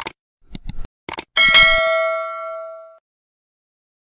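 Sound effect: a few quick clicks, then a single bell ding that rings out and fades over about a second and a half, then stops.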